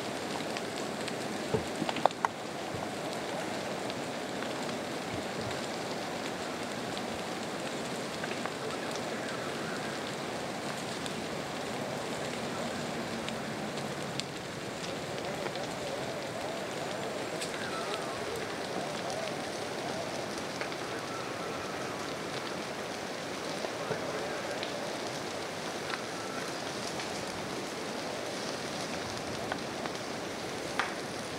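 Wildfire burning through conifer forest: a steady crackling hiss with scattered sharper pops, the loudest cluster about two seconds in.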